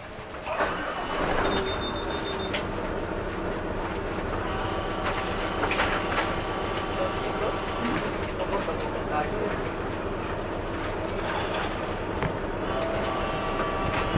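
Inside a city bus under way: a steady engine and road noise that grows louder about half a second in.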